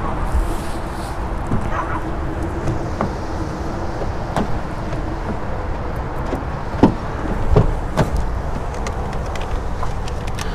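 Ford pickup truck's rear door being unlatched and swung open, with several sharp clicks and knocks from the latch and from things being handled in the cab; the loudest knock comes about seven seconds in. Steady outdoor noise throughout, with a faint steady hum during the first half.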